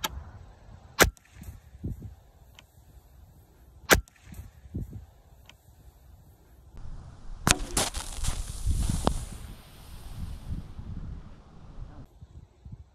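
Sharp cracks of a pellet air rifle being fired, the loudest about four seconds in. About 7.5 seconds in comes a sharp hit, followed by about three seconds of fizzing hiss as the shaken soda bottle sprays out in a fountain.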